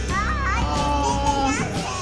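A young child's high-pitched voice calling out in rising, gliding sounds, over background music.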